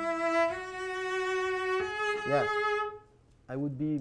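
A cello bowed in slow, sustained, connected notes, changing note about half a second in and again near two seconds. The playing stops about three seconds in, and a man starts speaking shortly after.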